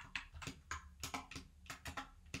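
Computer keyboard typing: a run of quiet, uneven keystrokes as a short word is typed out.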